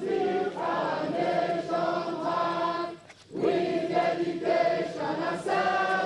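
A large group of youth corps members singing together in chorus: one held phrase, a brief pause about three seconds in, then the singing resumes.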